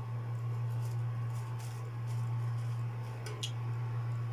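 A steady low hum runs throughout, with a few faint light clicks and rustles about one and a half and three and a half seconds in.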